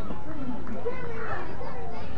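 Overlapping voices of spectators and children chattering and calling out, with no single clear speaker.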